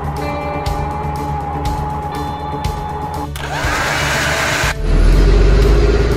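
Background music with steady tones, interrupted about three seconds in by a burst of noise with a rising sweep, then a loud low rumble near the end.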